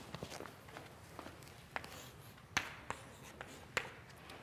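Faint chalk writing on a blackboard: a few short, sharp taps and scratches of the chalk against the board.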